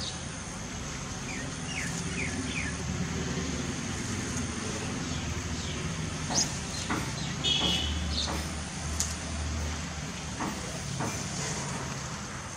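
Steady low background rumble, with a few short faint chirps about two seconds in and scattered light clicks.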